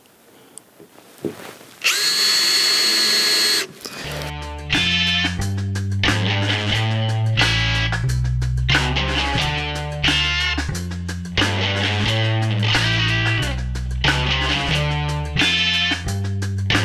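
A Makita cordless drill runs briefly, a steady whine for under two seconds about two seconds in, boring a countersink hole for a screw in plywood. From about four seconds in, background music with a repeating bass line and guitar plays.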